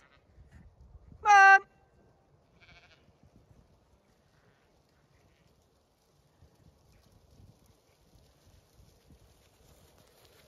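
A Zwartbles sheep bleats once, loudly, about a second in. After it come faint low thuds from the flock's hooves as the sheep run over the grass.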